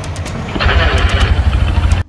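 Vintage BMW R50-series motorcycle's flat-twin engine running, with a pulsing exhaust beat. It gets markedly louder about half a second in and cuts off abruptly at the end.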